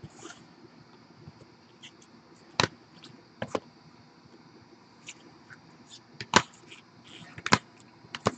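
Hard plastic card holders clicking and clacking against each other and onto the table as they are handled and laid out. Several sharp clicks come a second or two apart, the loudest about six seconds in.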